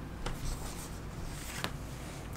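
A few brief rustles and light ticks of a paper comic book being handled.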